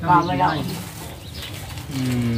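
A man's voice speaks a short phrase, then a quieter lull with faint background sound.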